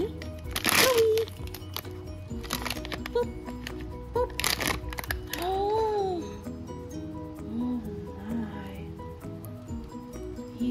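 Light background music with a steady melody, broken by three short bursts of crinkling from a foil blind-box bag being handled and opened: about a second in, near three seconds and near four and a half seconds.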